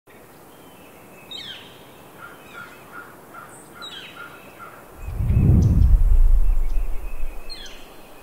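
Outdoor birdsong: birds giving descending chirps, with a run of short repeated notes in the first half. About five seconds in, a deep low rumble swells up for a couple of seconds as the loudest sound, then fades.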